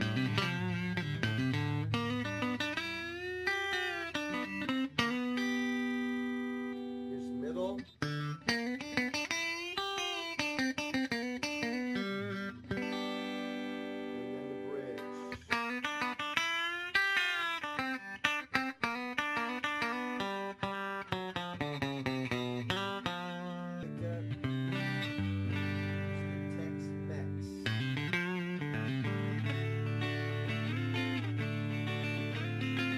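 Fender American Telecaster electric guitar played on its stock neck pickup through a clean amp setting, with the volume full up. It plays single-note lines with string bends that rise and fall back, and some held notes.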